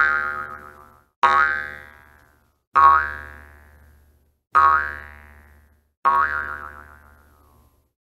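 Cartoon boing sound effect played five times: one already ringing out at the start, then four more about every one and a half seconds. Each boing starts suddenly, wobbles in pitch and fades away.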